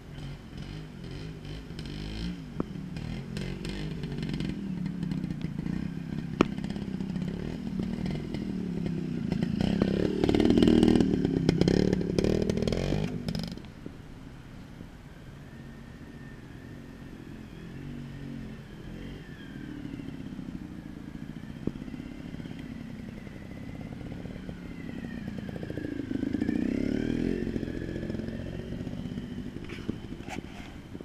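A trials motorcycle engine revving and blipping up and down as the bike is ridden over rocks. It grows loud and then drops away sharply about halfway through, and a fainter engine rises again near the end. There are a few sharp knocks among the revs.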